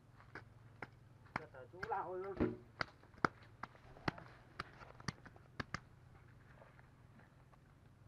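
Wet mud slapped and patted by hand onto a mud-packed bundle: a run of about fourteen sharp, irregular pats over the first six seconds, then they stop.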